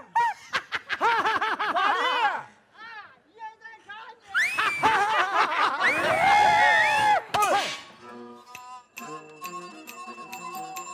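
Laoqiang opera performers' voices: a run of short rising-and-falling vocal calls, then several voices calling out loudly together in the middle. About eight seconds in, the folk band of plucked lutes, bowed fiddle and percussion starts a rhythmic tune.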